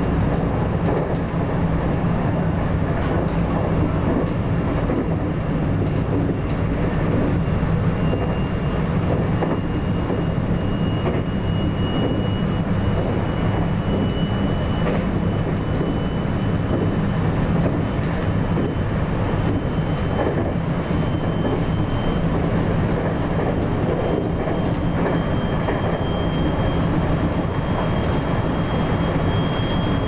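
JR West 521 series electric train running along the track, heard from the driver's cab: a steady rumble of wheels and running gear. Over it a faint high electric whine from the traction motors slowly rises in pitch as the train gathers speed.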